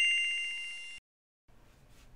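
A bell-like ding sound effect: two bright ringing tones with a rapid flutter, fading away and cutting off abruptly about a second in, then near silence.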